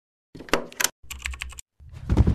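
Rapid clicking like typing on a computer keyboard, in two quick runs of key clicks, as part of an animated logo intro. A deeper, heavier hit begins just at the end.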